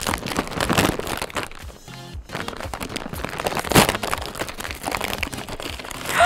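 Plastic Toonies snack bag crinkling and rustling as it is pulled open by hand and rummaged through, with one sharper crackle a little before four seconds. Background music plays underneath.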